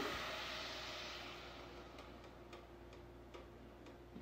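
Heavy whipping cream pouring from a carton into a pan: a soft hiss that fades away over the first two seconds or so, then a few faint ticks.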